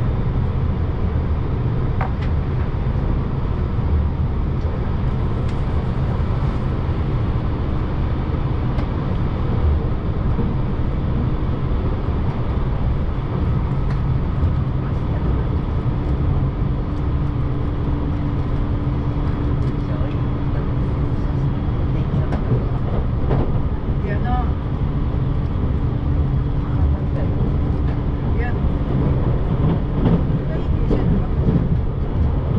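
Electric express train running at speed, heard from inside the passenger cabin: a steady rumble of wheels on rail, with a faint steady hum from about eight seconds in until a little past twenty seconds.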